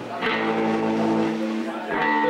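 A chord of several steady pitches from an instrument on stage, starting just after the beginning and held without change.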